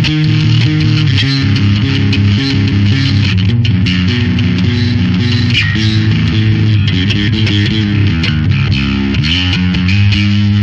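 Electric bass guitar played through a Darkglass Alpha Omicron distortion pedal with the distortion blended into the clean signal: a run of held notes with a biting edge, ending with a slide up in pitch.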